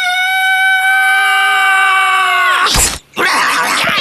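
A cartoon hedgehog's long, high, held scream, joined about a second in by a second, lower screaming voice; both drop in pitch and break off near the three-quarter mark. A sudden loud burst follows, then a busy rapid pattering cartoon sound effect.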